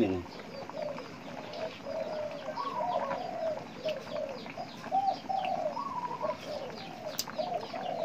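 Birds calling over and over in short, arched notes, about two a second, with the faint bubbling of a soup pot at a rolling boil beneath them. A single sharp click comes near the end.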